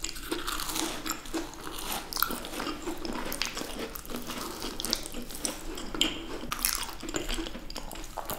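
Close-miked eating of macarons: bites into the shells and chewing, with many small irregular clicks throughout.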